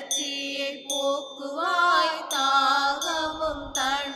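Devotional hymn singing: one voice holding long, gently bending notes over a steady instrumental accompaniment.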